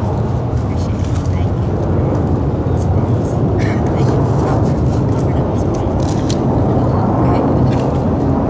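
Indistinct voices over a steady low outdoor rumble, with faint scattered clicks.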